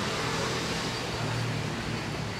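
Steady background hum of distant city traffic, with a faint low drone running under it.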